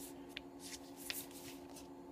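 Faint paper rustles and light ticks as the pages of a photo book are handled and turned, over a steady hum.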